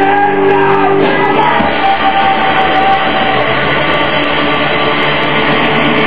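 Punk rock band playing live: distorted electric guitar, bass and drums, with shouted vocals.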